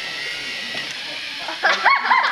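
A steady background hum, then from about a second and a half in, children's high-pitched excited shouts and squeals as two small robots go head to head.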